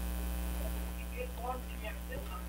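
Steady electrical mains hum, with a faint, indistinct voice in the second half.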